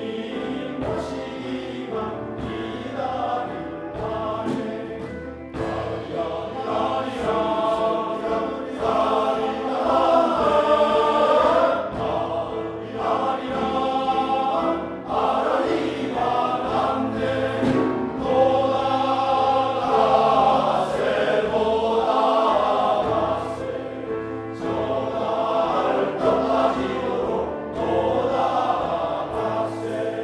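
Men's choir singing, its loudness swelling and falling back with the phrases.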